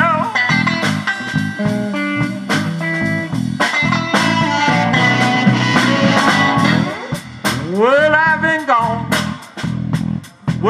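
Live electric blues band playing an instrumental stretch: electric guitars, bass guitar and drum kit with a steady beat, and a blues harmonica with bending notes near the end.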